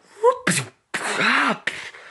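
A person's voice making mouth sound effects for a toy tank's cannon shot: a short pitched blip, then a longer noisy blast with voice in it about a second in.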